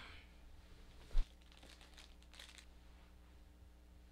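A single knock about a second in, then faint rustling and shuffling of someone searching the floor by hand for a small dropped plastic part.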